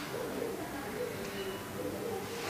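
Dove cooing faintly in the background, a series of short low notes.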